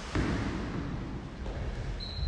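Fencers' shoes stepping and shuffling on a hardwood court floor: soft low thuds over a steady low rumble, with a slight rise shortly after the start. No blade contact.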